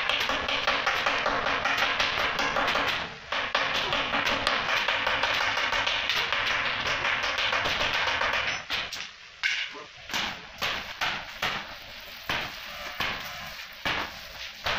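Stick arc welding on a steel water-heater tank: a steady crackling hiss of the arc that stops about eight and a half seconds in, followed by irregular sharp knocks and clicks.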